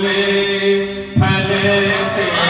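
A man reciting Urdu verse in a chanted, sung style into a microphone. He holds one long steady note, then shifts to a louder note just past a second in.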